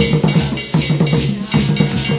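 Hand drums played together in a fast, even rhythm, with a bright metallic hand-percussion part on top.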